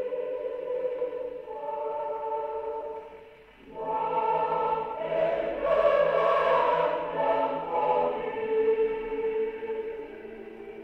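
A choir singing a hymn, played from a worn 78 rpm record on an HMV 102 portable wind-up gramophone, with a thin sound and no high treble. The singing drops away briefly about three and a half seconds in, then comes back fuller and louder.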